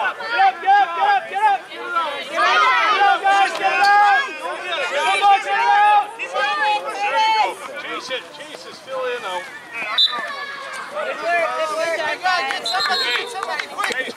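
Overlapping voices calling out and chattering, too jumbled to make out words, busiest in the first half.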